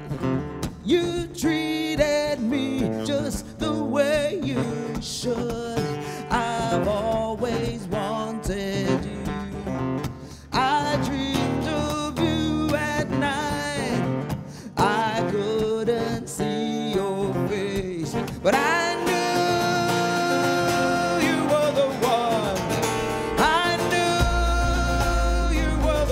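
A live song: a woman singing while playing acoustic guitar.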